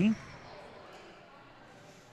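Faint, steady room ambience of a large gymnasium, with no distinct loud event.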